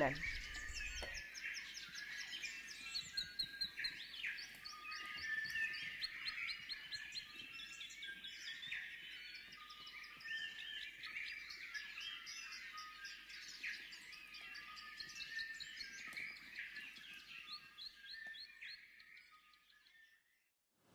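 A chorus of forest birds: many overlapping short, high chirps and rapid trills from several birds at once, fading out just before the end.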